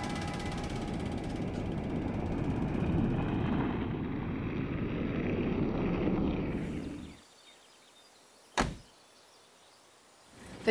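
A steady low rushing noise that fades out about seven seconds in, then a single sharp click.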